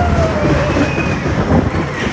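Small SBF Visa caterpillar family roller coaster train running on its steel track, heard from on board: a steady, rattling rumble of the wheels, with a brief rising-and-falling high note near the start.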